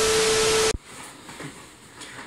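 A burst of TV-static hiss with a steady beep through it, a glitch transition sound effect, lasting under a second and cutting off suddenly; after it only faint room tone.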